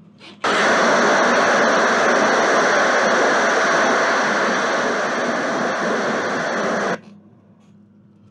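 Loud static hiss from a CRT television's speaker while the screen shows snow with no signal, starting suddenly about half a second in and cutting off abruptly about a second before the end.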